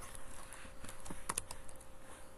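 Typing on a computer keyboard: a quick run of keystroke clicks, bunched together in about a second, as a short word is typed.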